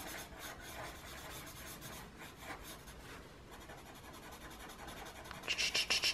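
A black felt-tip marker scribbling back and forth on paper to fill in a small solid area. The faint scratchy strokes grow louder near the end.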